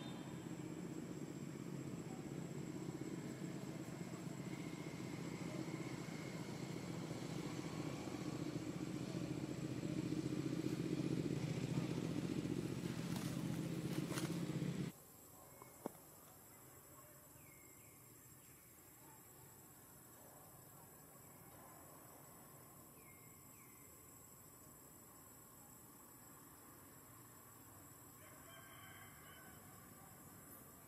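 A low rumbling noise grows steadily louder for about fifteen seconds, then cuts off abruptly. It is followed by faint outdoor ambience with a few short, high chirps.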